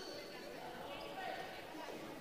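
Faint crowd chatter and hall noise from the arena between rallies, with a few distant voices.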